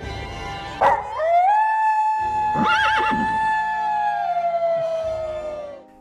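A wolf howl: one long call that glides up about a second in, holds its pitch, then slowly falls away near the end, over background music. A short sharp sound comes just before the howl begins.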